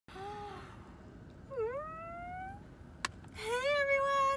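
A woman's wordless voice: a short hum, then an 'ooh' that dips and rises in pitch over about a second, a single click, and near the end a long held note that runs on into speech.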